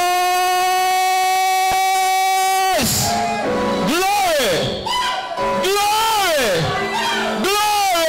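A man's voice shouting into a microphone: one long high note held for nearly three seconds, then several whoops that swoop up and fall away.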